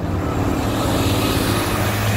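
A vehicle passing close by: a steady low engine hum under a rushing noise, swelling as it begins and then holding level.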